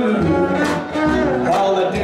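Western swing band playing live, with guitar and upright bass carrying the tune between the singer's lines.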